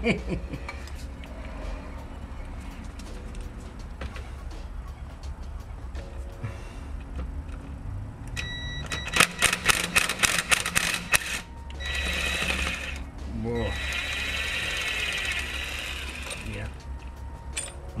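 Ryobi cordless impact driver on a rear CV-shaft flange bolt: about two seconds of rapid hammering clatter, then two spells of steady motor whirring as the bolt is run out.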